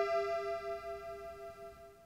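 A held accordion chord ending a grupera ballad, wavering slightly as it fades steadily out to silence.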